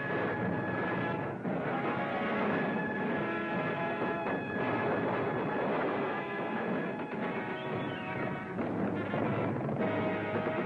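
Dense orchestral film music with timpani, playing loudly and without a break, with held notes through it.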